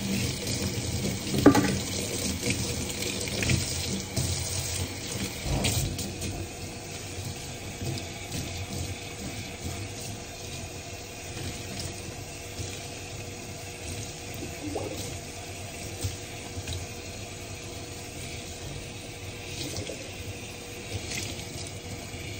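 Water running steadily from a kitchen sink's pull-down sprayer faucet and splashing through a child's hair as shampoo is rinsed out, a little louder in the first few seconds.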